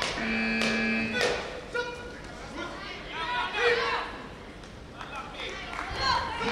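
Voices calling out in a large, echoing hall, short shouts that rise and fall in pitch, with a steady held tone lasting about a second near the start and a few sharp knocks.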